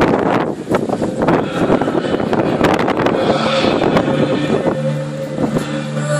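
Wind buffeting the microphone in loud, irregular gusts. Near the end, music starts with steady held notes.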